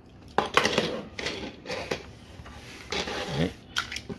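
Small hard-plastic toy vehicles clicking and clattering as they are handled and set down on a tabletop: a run of sharp clacks, the loudest about half a second in.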